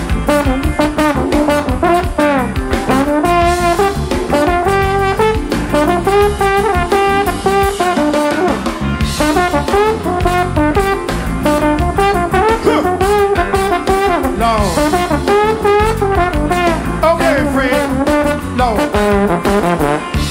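Trombone playing a solo melody line with bending, sliding notes over a funk band's groove of drums and bass.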